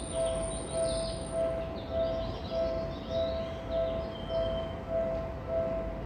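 Railway warning bell ringing steadily, a two-tone stroke about every 0.6 s, with small birds chirping high above it in the first half.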